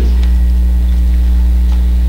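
Steady low electrical mains hum picked up through the pulpit microphone's sound system, unchanging in level, with a few faint clicks.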